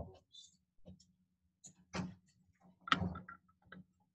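Marker writing on a whiteboard: a few short scratching strokes, the strongest about two and three seconds in, over a faint steady low hum.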